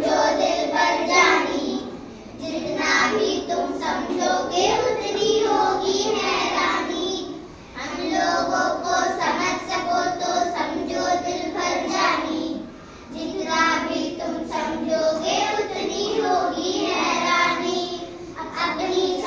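A group of schoolchildren singing together in unison, in phrases broken by short pauses about every five seconds.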